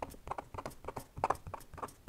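Sakura Micron fineliner pen scratching short, quick hatching strokes on vellum paper, about six strokes a second.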